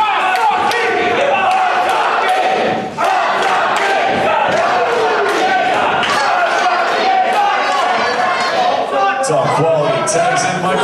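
A small wrestling crowd in a hall, shouting and chanting, with many sharp smacks throughout.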